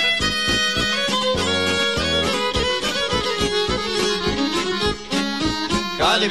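Instrumental break of Bosnian-Croatian izvorna folk music: a violin plays the melody over a fast, even strummed beat, typical of a šargija (long-necked lute) accompaniment.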